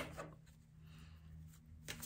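Near silence: quiet room tone with a faint steady low hum and a soft click near the end.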